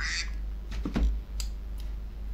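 A short breath at the start, then a few faint clicks about a second in with a soft low bump, against a steady low room hum.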